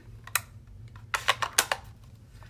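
A few sharp plastic clicks: one a little way in, then a quick run of four or five past the halfway point, as ink pad cases are handled and set down.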